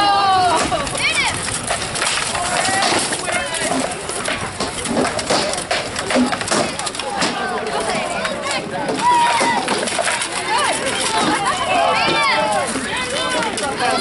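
Armoured melee combat: rattan weapons knocking against shields and armour in quick, irregular blows, with fighters and onlookers shouting.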